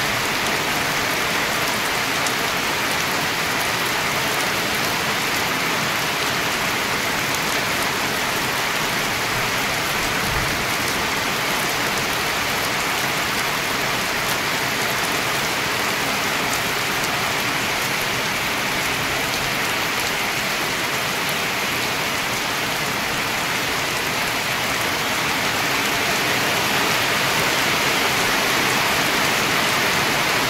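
Heavy rain pouring down steadily, with runoff streaming off the edge of a corrugated sheet roof. It grows a little louder near the end.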